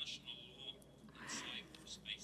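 Faint speech low in the background, most likely the original speaker's voice heard under the interpretation, with a brief faint high tone early on.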